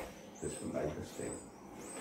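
Quiet speech: a man's voice saying a few soft words between pauses.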